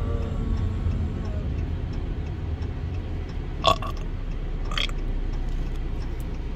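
Steady low rumble of road and engine noise inside a moving car's cabin, with two short sharp sounds about a second apart a little past the middle.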